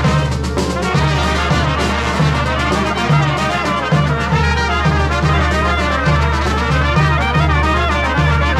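A Greek brass band playing a lively dance tune: trumpets and trombone carry the melody with a clarinet, over an accordion and a steady bass-drum beat.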